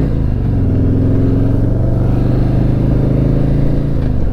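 2019 Harley-Davidson Electra Glide Standard's Milwaukee-Eight 107 V-twin engine running steadily as the bike cruises along the road, heard from the saddle.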